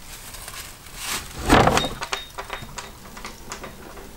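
Wooden bunker door being opened: a series of knocks and clicks, the loudest a scraping clatter about one and a half seconds in, with a brief high squeak just after.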